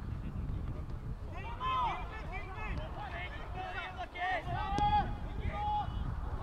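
Footballers shouting and calling out to each other on the pitch in short raised-voice bursts from about a second and a half in, over a steady low rumble.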